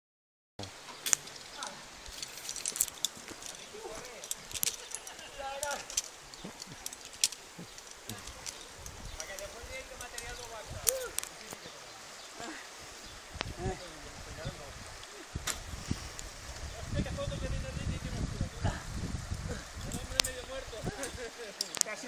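Distant, indistinct voices over the steady rush of a shallow river, with scattered sharp clicks and clinks.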